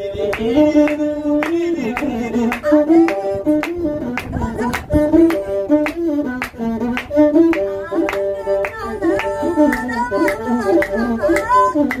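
Ethiopian azmari music: a masinko, the one-string bowed fiddle, played with singing and regular hand claps.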